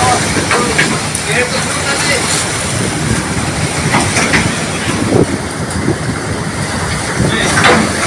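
Heavy sea and storm wind against a small vessel: a continuous rush of breaking waves and spray against the hull, with a big wave breaking over the bow near the end.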